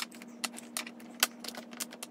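Small plastic eyeshadow pots clicking and tapping against each other and the wooden tabletop as they are picked up and set down in rows, about a dozen irregular clicks, over a faint steady hum.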